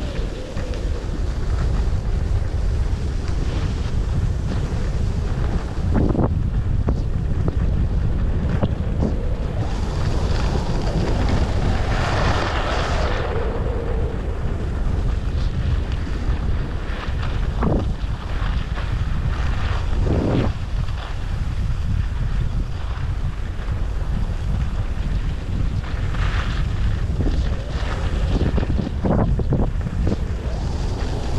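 Wind buffeting the microphone of a body-worn action camera while riding fast down a groomed ski slope, a steady heavy rumble. Now and then the edges scrape briefly on the packed snow, with a longer scrape about twelve seconds in.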